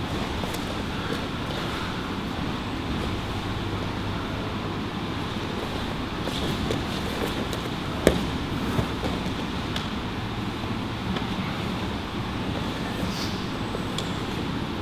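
Grappling on a padded mat against a steady background hiss, with one sharp thump on the mat about eight seconds in and a smaller one just after.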